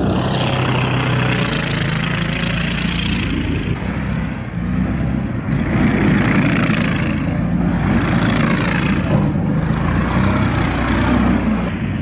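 Engine of a six-wheeled amphibious ATV running as it drives across snow. The engine note wavers and shifts in pitch, over a steady hiss.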